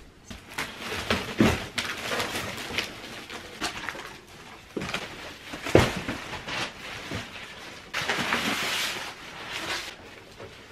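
Cardboard boxes being handled and flattened among black plastic bin bags: a run of irregular knocks, crinkles and rustles, with the sharpest thump about six seconds in and a longer rustle near the end.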